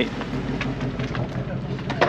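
Ford Mustang engine idling steadily with a low, even hum, its active exhaust valves closed.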